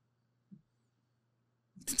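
Near silence with a faint steady low hum and one brief soft sound about half a second in; a man starts speaking near the end.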